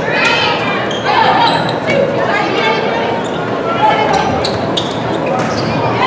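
A volleyball rally in a gymnasium: voices of players and spectators calling and cheering over one another, with several sharp smacks of the ball being struck, echoing in the hall.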